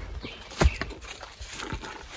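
A few scattered, short thumps and knocks, the loudest about two-thirds of a second in.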